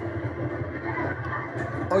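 Carrilana (wooden downhill cart) rolling fast down an asphalt street, a steady rumbling noise with faint crowd voices, heard from a screen's speaker.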